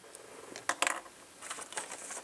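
A paper instruction sheet being picked up and handled, giving a few short, crisp rustles, two of them close together a little under a second in.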